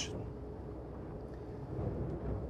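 Low, steady hull noise inside the forward cabin of a Princess F65 flybridge motor yacht running through a light chop, with a faint steady tone over it.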